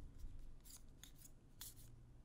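Faint, brief swishes of trading cards sliding against each other as a hand-held stack of Magic: The Gathering cards is flipped through, about three short strokes.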